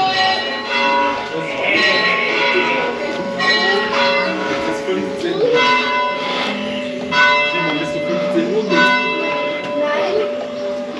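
Church bells ringing: a series of irregular strikes whose long ringing tones overlap and hang on.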